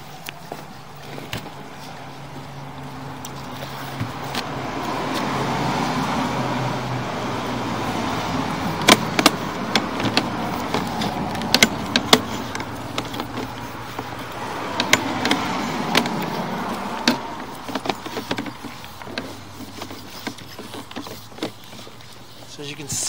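Sewer inspection camera's push cable being pulled back through the pipe and onto its reel: a rushing noise that swells and fades twice, with scattered sharp clicks.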